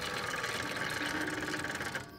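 Scissor jack being hand-cranked under a car wheel: a steady, rapid mechanical ratcheting rattle of closely spaced clicks.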